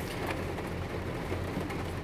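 Steady rain on a car's roof and windows, heard from inside the cabin, over a constant low hum.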